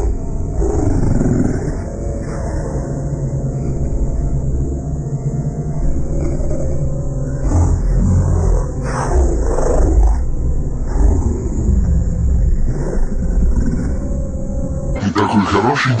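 Heavily effects-distorted cartoon soundtrack: deep, roar-like sound with voices that glide up and down, over a continuous low rumble.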